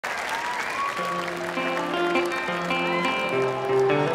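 Live audience applauding as the band starts to play, with sustained instrumental notes coming in about a second in over the clapping.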